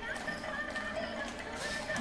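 Women singing a kummi folk song, heard faintly, with the taps of the dancers' rhythmic handclapping.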